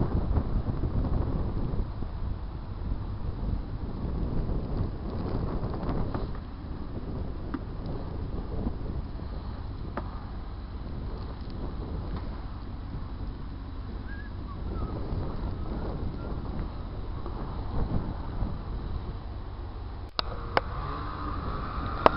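Wind during a snowstorm, rumbling steadily on the microphone.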